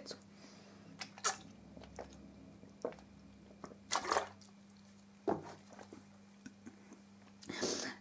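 Person drinking from a plastic soda bottle: a handful of short, soft sips and swallows spaced about a second apart, the most distinct about halfway through, over a low steady hum.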